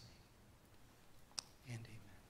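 Near silence in a large room, broken by a single sharp click about a second and a half in, then a brief low voice near the end.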